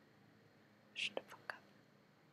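Mostly quiet, with a brief whispered hiss, like a soft "sh", about a second in, followed by two or three light clicks.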